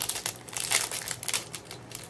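Crinkly packaging being handled and opened, a run of quick, irregular crinkles and rustles.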